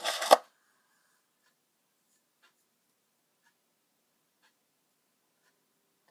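A brief rustle ending in a sharp knock, then near quiet with faint ticks about once a second.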